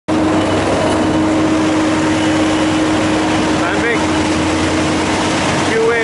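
Sandvik QA440 mobile screening plant running while screening damp lime: a loud, steady machine noise from its engine and two high-frequency vibrating screen boxes, with a hum holding one pitch until near the end.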